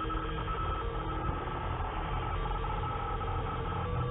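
Experimental electronic soundtrack: a dense, steady drone of several held tones at different pitches over a low rumble.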